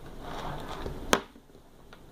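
Phones with charging cables attached being handled and lowered: a soft rustle, then one sharp click about a second in, like a phone or plug knocking down on a hard surface.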